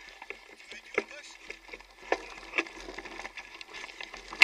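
Mountain bike rattling over a rough, muddy dirt track, with irregular sharp knocks and clatters, the loudest about a second in and twice more past the halfway point.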